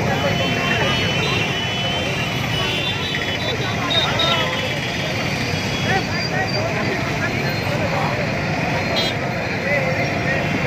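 Crowd of onlookers talking over one another in a steady murmur of voices, over a continuous low rumble of street noise.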